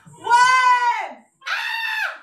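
Two long, high-pitched vocal cries of strain from people holding dumbbells out in a shoulder raise; the second starts about halfway through.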